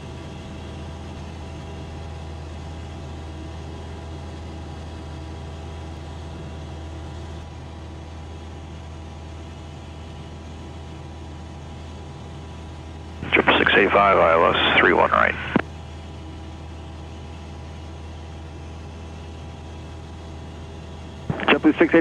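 Steady drone of a Van's RV-8's piston engine and propeller in the cockpit, cruising evenly on a low approach. About two-thirds of the way in, a short burst of voice-like sound cuts across it.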